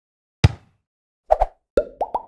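Logo-intro sound effect made of short percussive hits: a deep, heavy hit about half a second in, two quick pops just before a second and a half, then a hit with a brief ringing note near the end.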